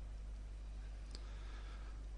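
A single faint click about a second in, like a computer mouse button advancing a slide, over a low steady hum of background noise.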